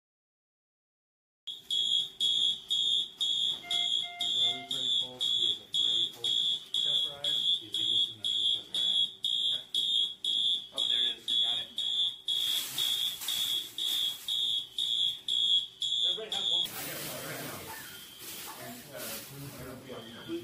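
A smoke alarm sounding a high-pitched beep about twice a second, starting about a second and a half in and cutting off near the end. A loud hissing noise joins it about twelve seconds in and carries on after the beeping stops.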